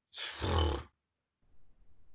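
A man's short, breathy vocal sound, a voiced exhale under a second long, followed by faint low noise near the end.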